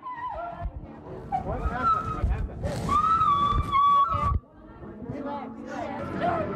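Archival recording of a woman screaming and crying out in pain from a fresh blow to her thigh, in long high wails, the longest held for over a second before it cuts off suddenly.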